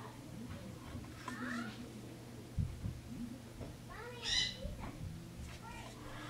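Two drawn-out high-pitched vocal calls in the background, each rising then falling in pitch, about a second and a half in and about four seconds in, the second louder. A soft thump about two and a half seconds in, over a steady low hum.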